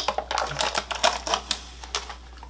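A cup's sealed lid being peeled open by hand: a quick run of crackling clicks for about a second and a half, thinning out near the end.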